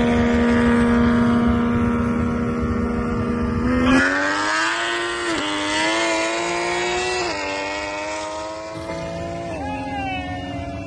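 Car engine at a steady drone, then from about four seconds in accelerating hard at full throttle, its pitch climbing through the gears with three quick upshifts.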